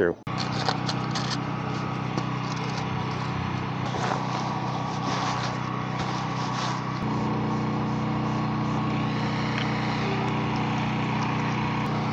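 A steady engine hum with even, level tones, shifting in pitch about seven seconds in, over faint voices in the background.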